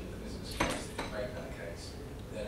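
A sharp clink of something hard about half a second in, with a fainter knock about a second in, over a man speaking.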